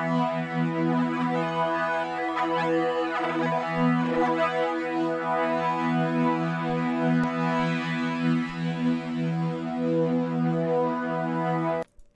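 Harmor synthesizer pad from the AeroPad Patcher preset, with its phaser turned up, holding one sustained chord. The phaser adds gentle sweeping movement through the upper frequencies. The chord cuts off shortly before the end.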